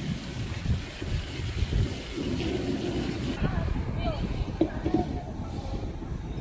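Outdoor street ambience: a steady low rumble of passing traffic with faint voices in the background.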